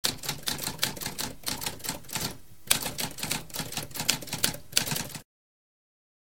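Typewriter keys clacking in a rapid run of keystrokes, with a short pause about halfway through. It stops suddenly a little after five seconds.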